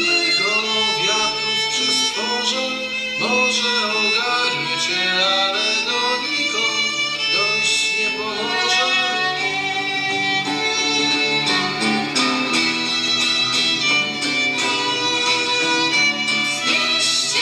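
Live acoustic group performing a song: an acoustic guitar strumming the accompaniment while a violin plays the melody line, with a singer's voice.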